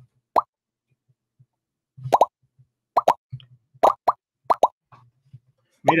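Quizizz lobby join sound effect: about ten short pops, some single and some in quick pairs, one for each player who joins the quiz.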